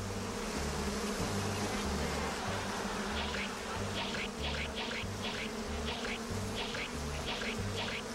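Insects buzzing like a swarm of bees, over a music bed with a repeating bass line. From about three seconds in, short high notes recur roughly twice a second.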